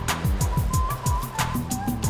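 TV segment ident jingle: electronic music with a fast ticking beat, repeated falling bass sweeps and a high whistle-like melody line.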